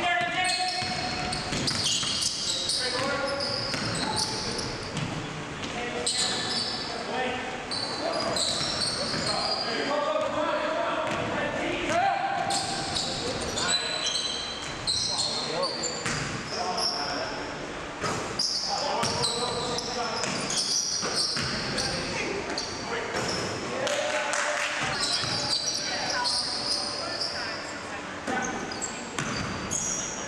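Basketball game sounds in a gym: a ball dribbling and bouncing on the hardwood floor, short high-pitched squeaks from shoes, and players calling out, all echoing in the large hall.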